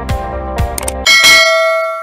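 Music with a steady drum beat, then about a second in a bright bell chime strikes and rings out, fading slowly: a notification-bell sound effect.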